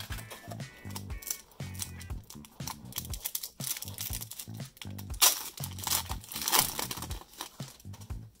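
A trading-card pack wrapper being torn open and crinkled by hand, with the crackling loudest in two bursts about five and six and a half seconds in. Background music with a steady beat plays underneath.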